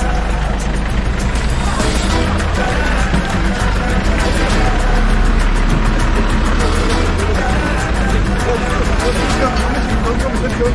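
Busy market street ambience: crowd chatter with music playing, and a van's engine running close by as a steady low rumble.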